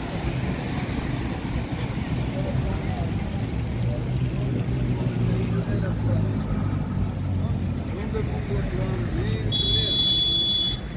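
Road traffic in a jam: a steady low hum of idling and slow-moving car and minibus engines, with voices in the background. A high steady beep starts near the end.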